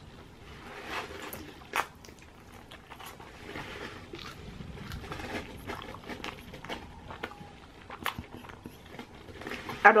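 Chewing and wet mouth sounds of someone eating a chicken wing, with scattered soft clicks; the sharpest clicks come about two seconds in and again near the end.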